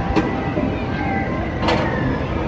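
Steady din of a spinning tower swing ride and people around it, with a brief sharp click just after the start and a short swish near the end.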